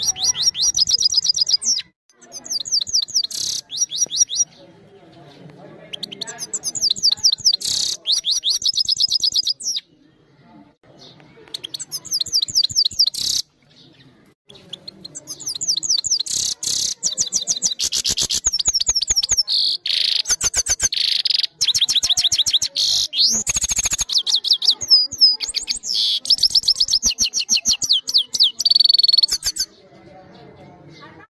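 Grey-headed goldfinch singing: fast, twittering phrases full of rapid trills, in bursts broken by a few pauses of a second or two, then song almost without a break for the last fifteen seconds or so.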